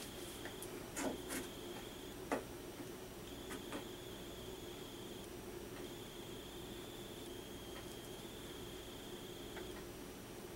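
Faint light scraping and tapping of a plastic modelling tool and fingertips working Quikwood epoxy putty on a wooden board, with a few short clicks in the first four seconds, the sharpest about two and a half seconds in, over a steady low hum.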